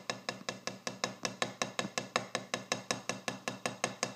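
Drumstick tapping steady, even single strokes on the harder black side of a Vater two-sided drum practice pad, about five taps a second.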